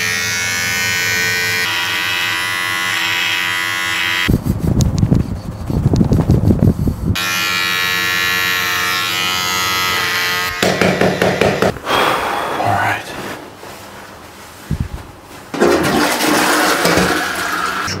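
Electric beard trimmer buzzing steadily, interrupted about four seconds in by a few seconds of water splashing at the sink. The buzz then returns and breaks up into uneven, quieter handling and splashing sounds in the second half.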